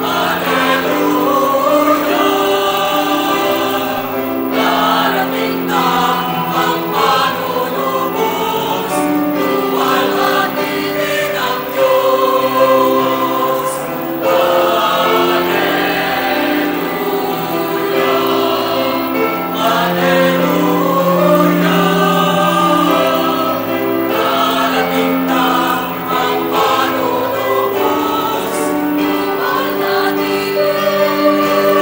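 A choir singing sacred music, moving in long held chords.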